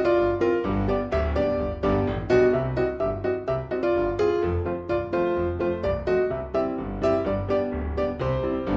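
Background instrumental music led by a keyboard, a quick, even run of notes over a bass line.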